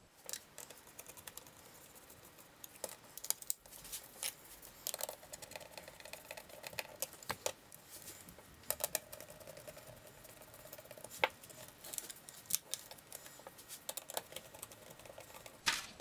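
Faint, irregular small clicks and light metallic scrapes of metal DIN-rail end stops being fitted and clamped onto a steel DIN rail.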